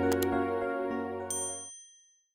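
Subscribe-button animation sound effects over soft background music: a quick double mouse click just after the start, then a bright bell-like notification ding past the halfway mark that rings out as the music stops and the sound fades away.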